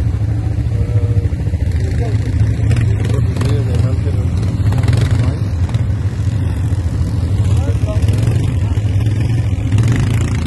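Quad bike (ATV) engine idling steadily as a continuous low hum, with indistinct voices over it.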